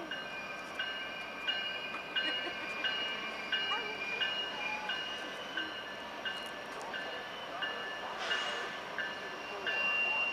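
Freight train rounding Horseshoe Curve at a distance, its wheels squealing against the rails on the curve in steady high-pitched tones that break off and resume at a regular beat.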